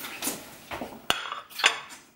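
Dishes and cutlery being handled: a few clinks and knocks, the sharpest about a second in.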